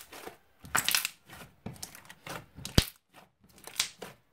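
Thick slime being squeezed and kneaded by hand, in irregular bursts of squelching and crackling, with one sharp click about two-thirds of the way in, typical of a trapped air pocket popping.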